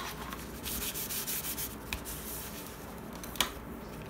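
Hand rubbing over paper glued onto a cardboard cover, pressing it flat so it sticks down, a steady dry rubbing sound. A single sharp tap about three and a half seconds in.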